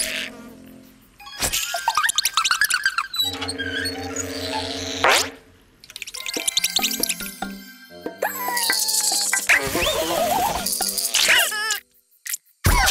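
Cartoon soundtrack: playful music mixed with comic sound effects. About three seconds in, a low pulsing drone runs for a couple of seconds.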